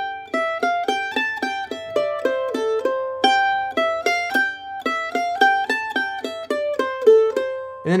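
F-style mandolin picked with a flatpick, playing a single-note fiddle-tune phrase in C major: a steady run of about four notes a second, each note ringing briefly, with a longer held note near the end.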